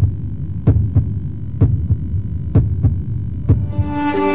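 Heartbeat sound effect: pairs of low thumps about once a second over a low drone. Bowed strings come in just before the end.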